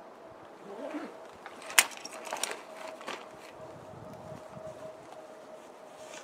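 Gear being handled inside a backpack: rustling with a few knocks and clicks, the sharpest about two seconds in, as a first aid kit is dug out.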